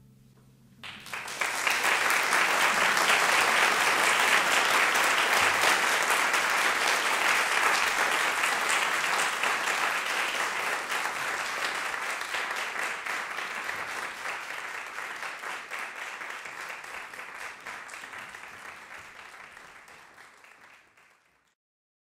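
Audience applauding after the piece ends. The clapping starts about a second in, then slowly dies away and stops shortly before the end.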